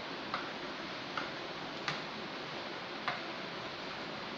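A metal spoon clinking against a steel bowl four times at uneven intervals while thick custard is stirred, over a steady hiss.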